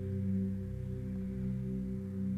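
Meditation background music: a low drone of several steady tones held together.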